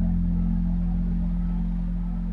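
Background music ending on a held low chord that slowly fades away.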